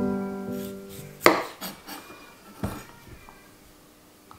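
Kitchen knife cutting through a daikon radish onto a wooden cutting board: one sharp chop a little over a second in, then a few softer cuts. Music notes fade out at the start.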